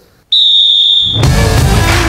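A single loud, high whistle blast about a second long, then rock music with electric guitar kicks in: the intro sting of a segment.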